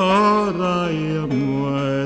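Male folk singing: one drawn-out note, wavering at first, that steps down in pitch twice, as part of a slow traditional-style folk song with acoustic guitar accompaniment.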